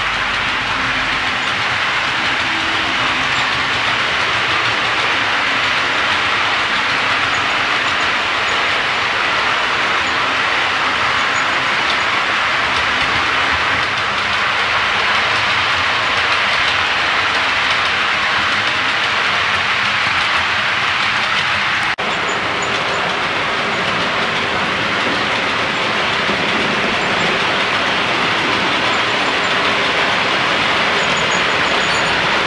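OO-scale model trains running on the layout: a steady rolling rumble and hiss with clickety-clack from the rail joints. There is a brief break about two-thirds of the way through, after which it carries on.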